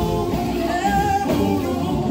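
Live gospel singing by a male vocal group through microphones and a PA, over band accompaniment with electric bass; one voice holds a note about a second in.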